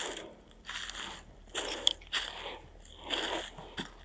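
Footsteps crunching and rustling through thick dry leaf litter on a steep slope, about five uneven steps.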